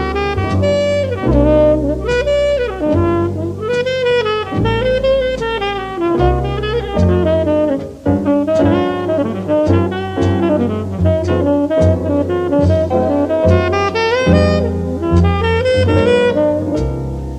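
Modern jazz quintet playing a ballad: a tenor saxophone carries a gliding melodic line over double bass and the rhythm section.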